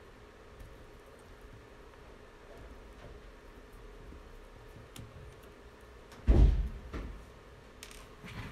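Handling of a laptop's display hinge and chassis on a workbench: a few faint small clicks, then one loud dull thump about six seconds in, followed by a lighter knock.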